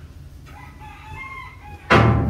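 A rooster crowing faintly in the background in one wavering call. Just before the end comes a sudden loud thump.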